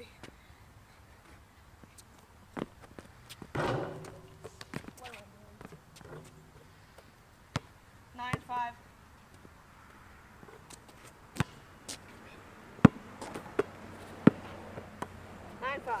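Basketball bouncing on an asphalt court: scattered, irregular thuds of dribbling and play, with a brief shout about eight seconds in.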